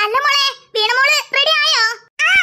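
A high-pitched character voice speaking in short, sing-song phrases whose pitch swoops up and down.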